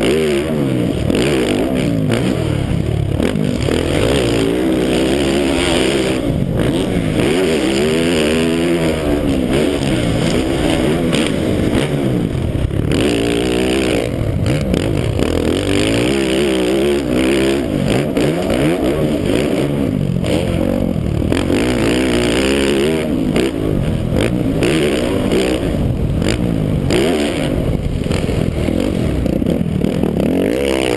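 Motocross bike engine revving up and down over and over as the rider accelerates and shifts around a dirt track, heard up close from a camera mounted on the bike.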